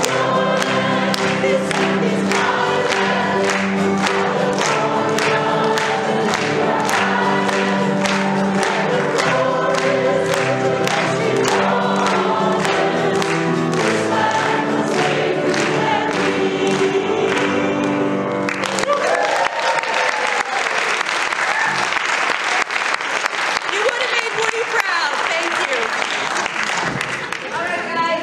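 Choir singing with hand-clapping in time, about two claps a second. About eighteen seconds in the singing stops and gives way to sustained applause and some cheering.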